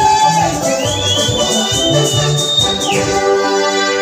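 Live praise-and-worship band music: electronic keyboard over a drum and bass beat. About three seconds in, the beat drops out, leaving held keyboard chords.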